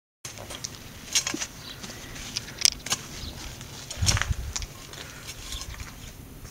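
Metal hoe blade scraping and chopping through muddy garden soil in short, irregular strokes, with a duller thump about four seconds in.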